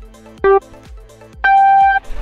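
Race-start countdown beeps: a short low beep about half a second in, then a longer, higher beep starting about a second and a half in, the 'go' signal that starts the race.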